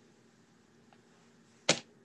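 Quiet room tone with a faint steady hum, broken once, about three quarters of the way through, by a single short, sharp tap.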